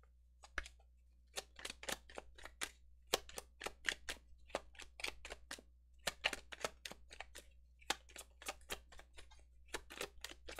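Tarot deck being shuffled by hand: a long run of quick, irregular card clicks and flicks starting about half a second in.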